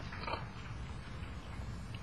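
A brief breathy, snort-like human vocal sound about a quarter second in, over a steady low room hum.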